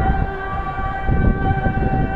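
A muezzin chanting from the minaret, holding one long, steady note.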